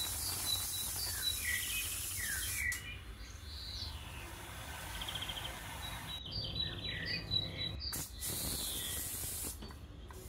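Small birds chirping and calling repeatedly in the background, short rising and falling notes. A soft high hiss sits under them, drops out about three seconds in and comes back near the end.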